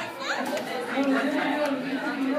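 Indistinct chatter: several people's voices talking over one another.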